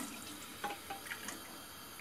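A pour of turnip juice into a stainless steel pot stops at the very start, leaving a few faint drips and small ticks as the last of the glass drains into the pot.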